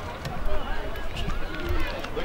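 Distant voices of players and onlookers calling across an open football ground, with a steady low rumble of wind on the microphone.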